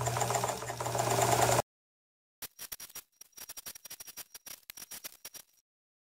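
Electric sewing machine running at speed, a rapid even stitching rhythm over a steady motor hum, stitching a zipper into tent fly fabric; it stops abruptly about a second and a half in. After a cut, a run of irregular light clicks follows.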